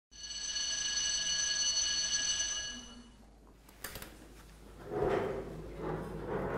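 A school bell ringing steadily for about three seconds, then stopping. A sharp click follows, then some shuffling movement noise near the end.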